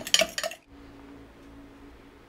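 A fork clinking against a bowl as eggs are beaten, stopping about half a second in; then faint room tone with a low steady hum.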